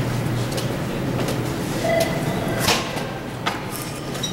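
Steady low hum of a large lobby's room tone, with a few sharp knocks and rustles of the handheld camera being moved.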